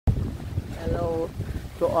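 Wind buffeting the microphone outdoors, a steady, uneven low rumble, with a brief voice about a second in and speech starting near the end.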